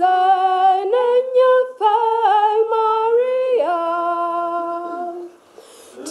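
Unaccompanied hymn singing: a slow melody of sustained notes, with no instruments. The last long note fades out about a second before the end.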